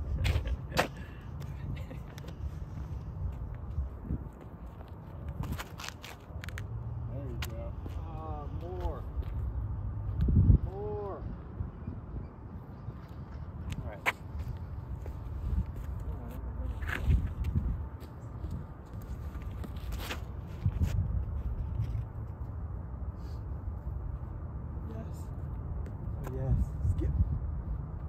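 Low steady rumble of wind on the microphone, with scattered footsteps and clicks on a concrete tee pad. Brief voice sounds, a laugh or call, come around 8 and 10 seconds in and again near the end.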